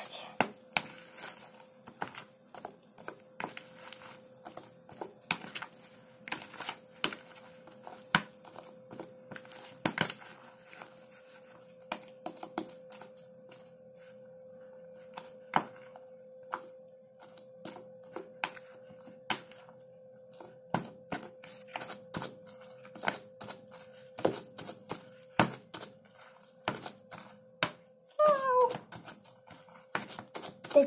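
Thick fluffy slime being stirred with a plastic spoon and pressed with gloved hands in a plastic tub: irregular sticky clicks and pops. The slime is stiff and nearly finished, hard to stir.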